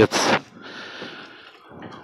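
A man's voice for a moment, then a faint hiss for about a second, like a breath drawn between phrases.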